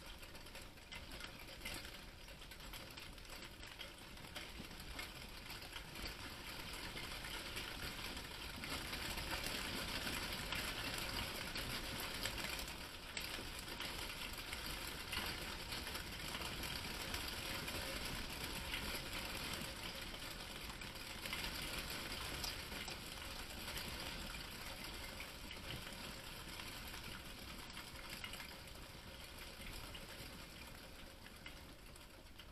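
Hail and heavy rain pattering in a dense, continuous clatter of small ticks, building about eight seconds in, heaviest through the middle and easing a little near the end.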